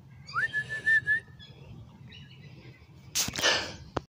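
A single clear whistled note that slides up and is then held for about a second with a slight waver. A brief noisy burst follows near the end.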